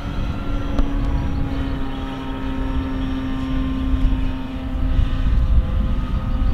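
Electric radio-controlled model airplane flying overhead, its motor and propeller making a steady drone that fades near the end, over a low rumbling noise.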